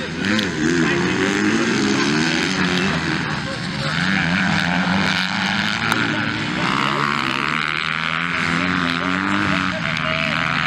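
Dirt bike engines revving on the race track, their pitch rising and falling as the riders open and close the throttle.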